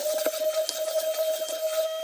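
A small handheld desktop vacuum cleaner switched on with a steady high whine and hiss, sucking up loose bits of glitter from a cutting mat. It is switched off at the end, its pitch sliding down as the motor spins down.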